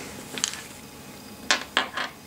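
Dice thrown into a wooden, felt-lined dice tray: a few sharp clacks, one short one near the start and a quick run of three in the second half, the first of these the loudest.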